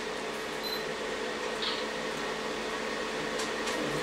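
A steady, even fan-like whir with a faint constant tone running through it.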